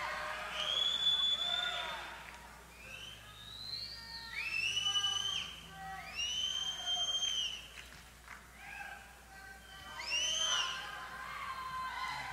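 Concert audience whistling and cheering between songs: several long, high whistles, some gliding up in pitch, over scattered crowd voices.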